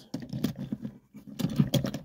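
Light, irregular clicking and rattling of a small die-cast toy car being pushed by hand up the plastic loading ramp of a toy car transporter, with the clicks busiest in the second second.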